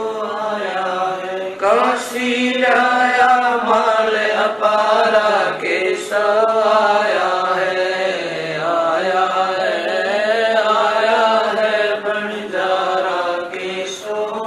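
A woman chanting devotional verses in a slow, drawn-out melodic recitation, holding long notes that bend up and down.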